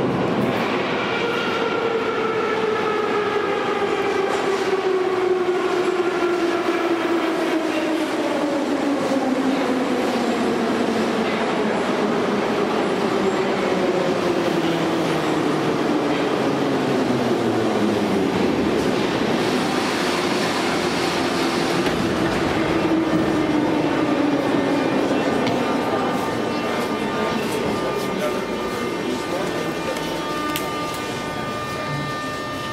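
Moscow Metro train pulling into the station, its motor whine falling steadily in pitch as it slows over the first quarter-minute. A second, lower falling whine follows about twenty seconds in, under the general rumble of the station and the car.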